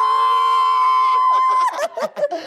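A long, high scream of excitement held on one steady pitch, cutting off near the end, as a champagne bottle foams over.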